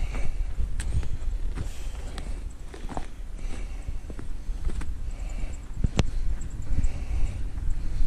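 Footsteps walking through fresh snow in an uneven series of steps, over a steady low rumble.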